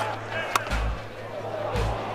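A single sharp crack of a cricket bat striking a fast-bowled ball about half a second in, the shot going for four, over background music with a steady beat.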